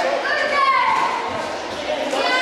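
Children's and spectators' voices chattering and calling out in a large hall, with one higher raised voice in the first second.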